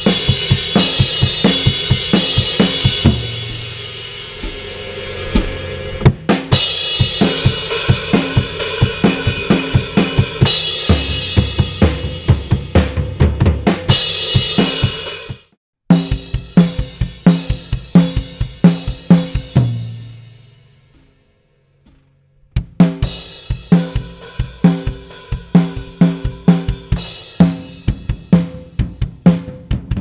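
Acoustic drum kit played in a steady groove of kick, snare, hi-hat and cymbals. For about the first half it is heard through the camera's own microphone, with a heavy cymbal wash; it then cuts abruptly to the raw, unmixed close-microphone recording, drier with more distinct hits. That part fades out, and after a brief pause about two-thirds in, the playing starts again.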